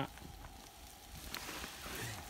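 Faint steady hiss of a campfire under a grill, with a few soft crackles.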